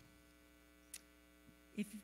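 Faint steady mains hum from the church sound system, with a single short click about a second in.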